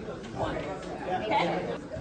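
Background chatter: several people talking at once, quieter than the instructor's voice.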